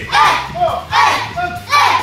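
A group of children in a karate class shouting in unison, three sharp shouts about three-quarters of a second apart, in time with their drill kicks.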